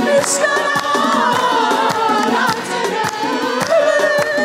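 A mixed choir of men and women singing a worship song together, with hand clapping keeping a steady beat of about three to four claps a second.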